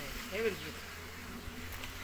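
A short vocal sound from a man about half a second in, followed by a low steady buzz.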